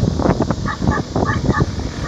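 Engines of a pack of racing karts heard at a distance as they run through the turns, an uneven rumbling drone.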